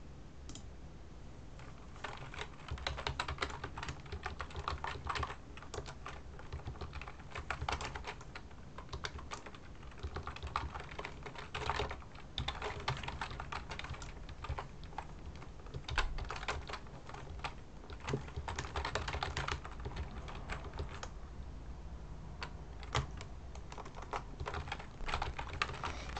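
Typing on a computer keyboard, entering a line of code: irregular runs of key clicks with short pauses between them, starting about two seconds in.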